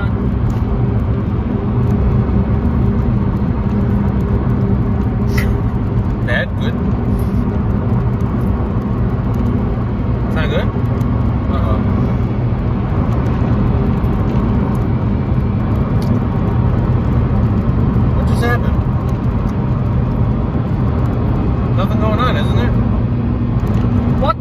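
Steady low hum of a car heard from inside the cabin, with a few brief clicks along the way.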